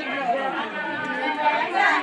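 Several women talking at once: overlapping chatter of a small group, with no single clear voice.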